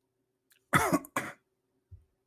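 A man gives two short coughs close together, about a second in.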